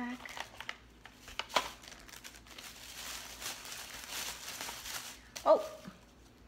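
Thin plastic shopping bags crinkling and rustling as items are pushed into them and rummaged through, with a sharp crackle about a second and a half in.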